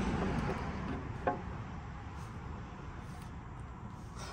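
Steady background noise with one short clink about a second in, as a part is handled on the engine during the valve cover fitting.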